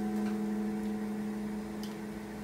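An acoustic guitar chord left ringing, slowly fading away, with a couple of faint ticks.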